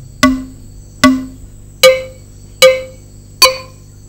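Five struck drum notes at an even, slow pace, about one every 0.8 s, each ringing briefly; the first two are lower-pitched and the last three a step higher.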